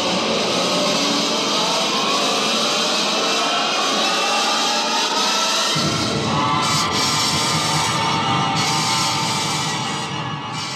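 Radio-drama rocket blast-off sound effect: a loud, dense roar laced with tones that slowly rise in pitch. A deeper rumble joins about six seconds in, and the roar begins to fade near the end.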